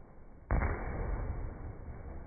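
A bat striking a ball once, about half a second in, as a sharp crack. It is followed by a steady low rumble of background noise.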